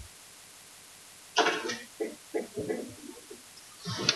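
A person coughs once, sharply, about a second and a half in, followed by a few fainter short throat sounds.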